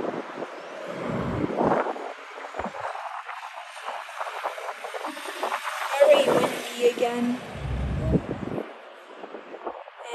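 Strong wind buffeting the microphone in gusts, with deep rumbling surges about a second in and again near the end over a steady rushing noise.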